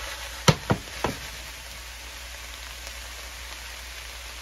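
Chopped cabbage and onions frying in a skillet, a steady sizzle, with three sharp knocks in the first second or so as the pan is handled on the stovetop.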